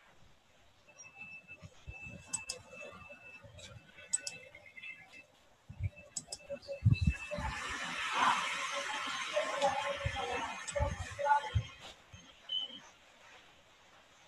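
Stray background noise coming through participants' unmuted microphones on a video call: faint clicks and a thin high tone at first, then a patch of hiss-like noise with a few low thumps from about seven seconds in until near the end.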